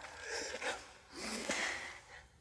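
A man's breathing: two soft breaths, about a second apart, with a faint click between them.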